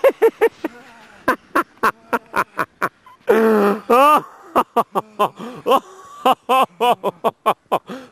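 A person laughing hard in quick, repeated bursts of high-pitched 'ha's, with a couple of longer drawn-out laughs in the middle, reacting to a snow-tube wipeout.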